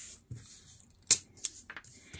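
Hands pressing and smoothing washi tape onto a paper book page on a cutting mat: faint rubbing of paper, with a sharp click about a second in and a smaller one shortly after.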